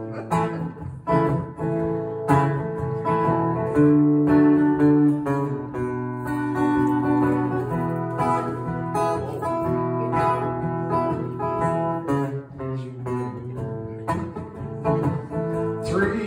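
Acoustic guitar strummed in a steady rhythm, playing the instrumental introduction of a folk song before the vocal comes in.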